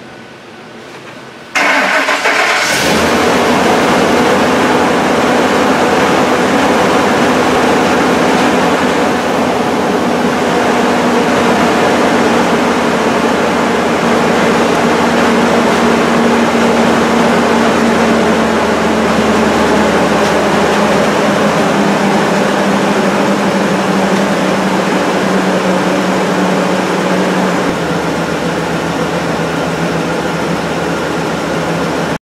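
Ford 5.4 L three-valve V8 in a 2005 Super Duty pickup cranked and started about two seconds in, then running steadily, its idle easing slightly lower near the end. The engine runs rough and was found by scope to be out of cam timing.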